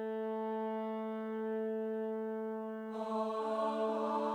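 Background music: one low note held steady. About three seconds in, a fuller layer of tones and hiss joins it.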